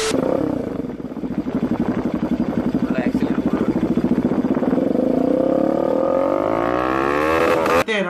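Motorcycle engine running through an SC Project slip-on aftermarket exhaust, a rapid pulsing exhaust note at idle that then revs up, rising in pitch over the last few seconds before cutting off suddenly.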